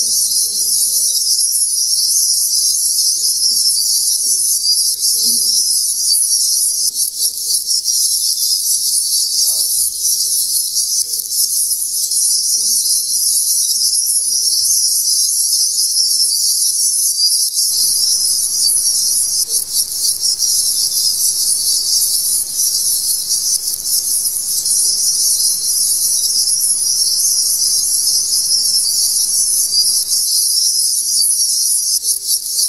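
A loud, steady shrill hiss high in pitch, unbroken throughout, with a faint low murmur beneath it in the first half.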